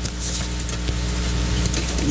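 Room tone of a microphone system: a steady electrical hum under an even hiss, with a few faint clicks.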